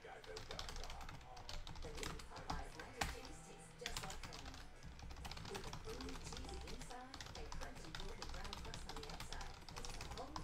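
Computer keyboard being typed on: an irregular scatter of quick light clicks over a low hum.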